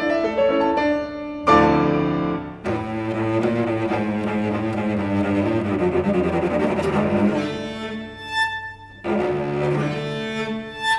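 A cello and piano duet in classical style. Piano plays alone at first, then the cello comes in within the first couple of seconds with sustained bowed notes over the piano accompaniment.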